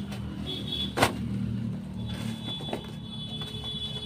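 Plastic bubble wrap crinkling and rustling as it is pulled off a small cardboard box, with one sharp snap about a second in, over a steady low hum.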